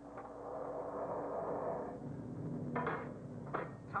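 Studio sound effect of spaceship steering rockets firing at increased thrust: a rushing roar that swells for about two seconds and then fades. A couple of short bumps follow near the end as the ship knocks against the other craft.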